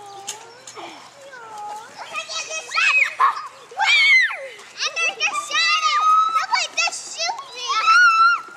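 Children's high-pitched shouts and calls as they play, several voices overlapping, getting louder and busier from about two and a half seconds in.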